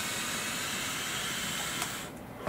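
A long draw on a vape device: a steady, airy hiss of air pulled through the device as it fires, stopping near the end.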